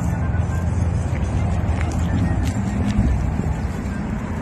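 Steady low outdoor rumble like passing traffic, with background music and a few faint ticks.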